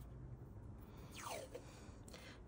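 Faint sound of washi tape being peeled off its roll, with one brief falling squeak a little past the middle.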